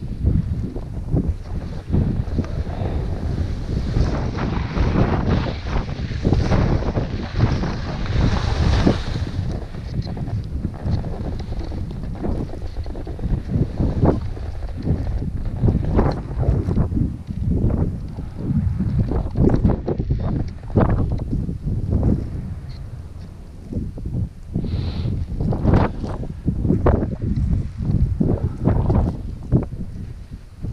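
Wind buffeting a body-worn camera's microphone as a skier descends, with the hiss and scrape of skis on packed snow through the turns; a longer hissing slide about four to nine seconds in.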